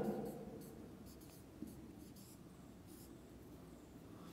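Marker pen writing on a whiteboard: faint, short, irregular scratching strokes as a word is written.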